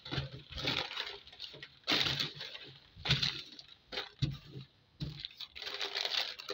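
Crumpled paper sewing patterns rustling and crinkling as they are handled and moved across a table, in a series of irregular bursts.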